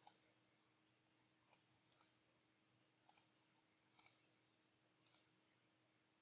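Faint computer mouse clicks, six in all, most of them quick double clicks, about a second apart.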